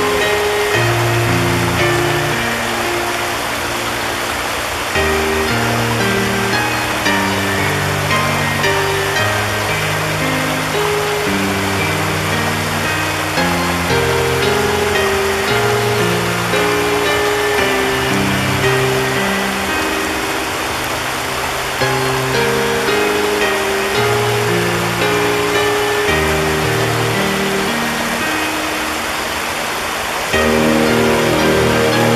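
Soft, slow background music of sustained low notes that change every second or two, laid over the steady rush of a shallow stream running in small cascades over rocks.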